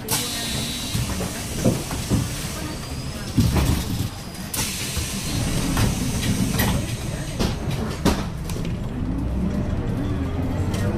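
Cabin sound of a 2015 Hyundai BlueCity low-floor city bus under way: a steady low engine and road rumble, with a number of sharp knocks and rattles at irregular intervals.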